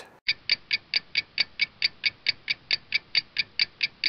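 A clock ticking quickly and evenly, about four to five sharp ticks a second.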